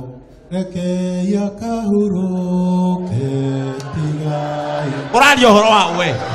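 A man's voice through a microphone chanting long, held notes that step from one pitch to the next. Near the end comes a louder cry with a rapidly wavering pitch.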